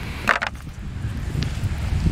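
Wind buffeting the microphone, with one short clatter about a quarter of a second in as a quartz rock is put into a plastic bucket of rocks, and a faint tick later.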